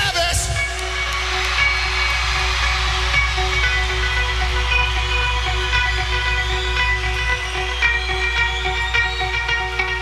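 Electric guitar playing a repeated riff alone to open a song, over crowd noise. A steady low drone sits beneath it and drops away about seven seconds in.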